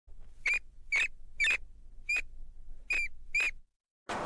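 A series of six short, high-pitched squeaks, about half a second apart, over a faint low hum. All of it cuts off just before the end.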